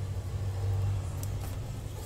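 A steady low background rumble, with a couple of faint clicks a little over a second in.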